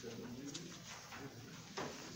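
Sheets of paper rustling in a quiet meeting room, with a faint low murmured voice in the first half second.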